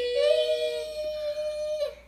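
Nonsense vocal sound drawn out as a long, high sung note, with a second, higher note coming in just after the start; both stop shortly before the end.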